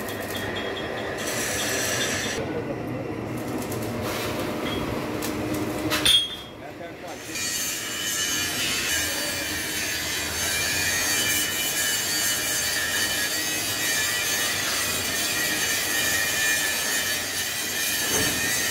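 Three-roll plate bending machine rolling a heavy steel plate (about 10 mm thick), with a continuous mechanical rumble and grind of the rollers and drive. There is a sharp bang about six seconds in, after which a steady high whine runs on.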